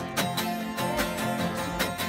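Two acoustic guitars strumming a steady blues rhythm with a fiddle playing along, in an instrumental gap between sung lines.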